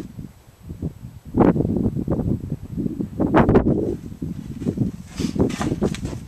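Irregular rustling and wind buffeting on the microphone, in uneven gusts that surge loudest about a second and a half in, again a little after the middle, and near the end.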